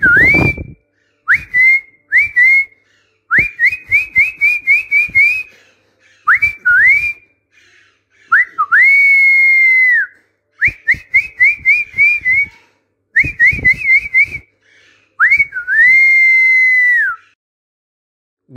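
A person whistling a training phrase for parrots to copy: groups of short upward-swooping whistle notes, about three or four a second, broken by two long notes that swoop up, hold steady and drop away at the end, near the middle and again near the end.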